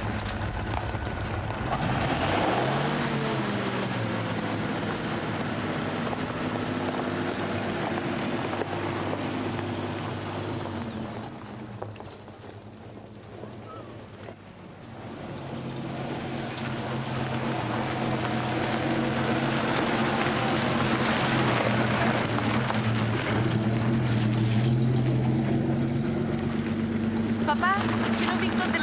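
Vintage car engine running as the car drives along, fading away about twelve seconds in and rising again from about fifteen seconds in as a car approaches.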